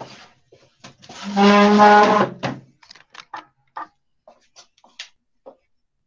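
A person's voice holds one drawn-out, level note for about a second and a half, like a long 'uhh'. It is followed by a scatter of light knocks and clicks as someone gets up and moves about the room.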